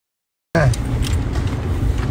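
Low, steady rumble of a moving car heard from inside the cabin, cutting in suddenly about half a second in after dead silence, with a brief voice-like sound at its onset and a few light clicks.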